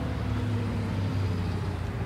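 A motor vehicle's engine running nearby, a steady low hum with no sudden change.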